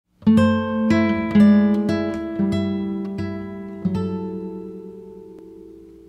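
Background music: an acoustic guitar picking single notes and chords, about one every half second, then letting the last chord ring and fade out.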